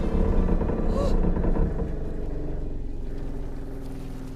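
A deep crash rumble as a vehicle smashes down onto rooftops. It is loudest in the first second and a half and then slowly dies away, with faint music held underneath.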